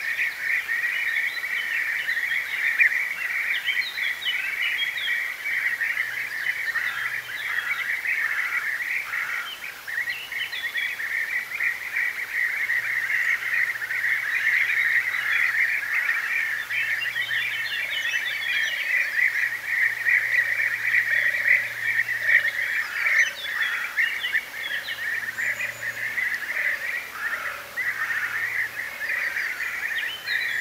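European bee-eaters calling: many overlapping rolling calls merge into a continuous chorus, with shorter higher chirps over the top.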